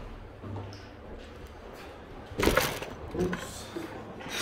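A man's voice during an armwrestling pull: a sharp, loud burst of breath about two and a half seconds in, followed by a few short voiced sounds.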